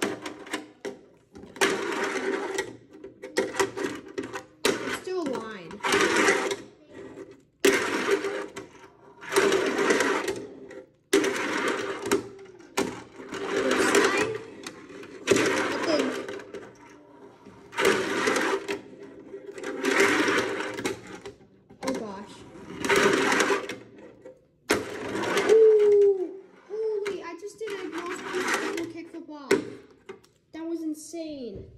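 Fingerboard wheels rolling back and forth across a small halfpipe ramp. Each pass is a rolling rumble about a second long, repeating roughly every two seconds.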